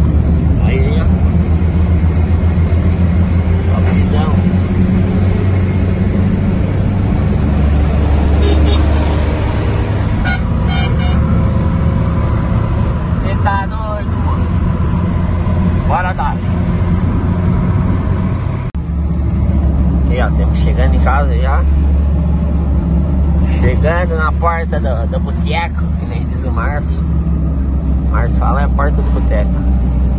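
Car interior noise while driving on a wet road in rain: a steady low engine and tyre drone.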